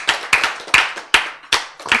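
A small audience clapping: irregular hand claps, about five or six a second.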